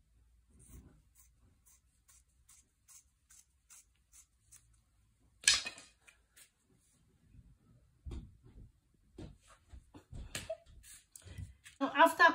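Fabric scissors snipping through fabric in a steady run of short cuts, about two a second, over the first five seconds. A brief loud rustle about halfway, then quieter fabric-handling noises.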